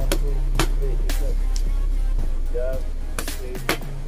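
Boxing gloves punching focus mitts: a handful of sharp smacks, two close together near the end, over background music with a steady bass line.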